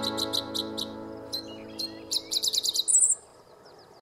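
A strummed guitar chord ringing out and fading, under a string of quick, high bird chirps that come faster near the end and finish in a brief higher trill about three seconds in.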